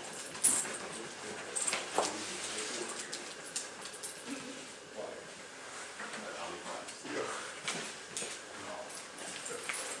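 A large dog sniffing along the floor as it searches for a scent, a string of short, noisy sniffs and small knocks, with low voices murmuring in the background.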